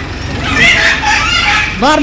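A bird calling over people's voices, with several calls overlapping.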